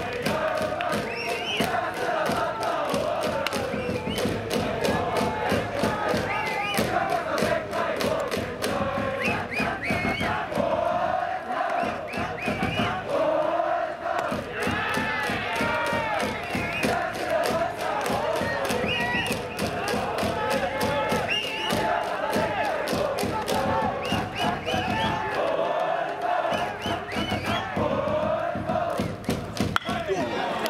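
A school cheering section in the stands chanting in unison over band music, with a steady drumbeat running throughout.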